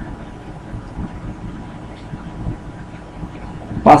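Faint, steady background noise of the recording room during a pause, with a voice starting to speak just at the end.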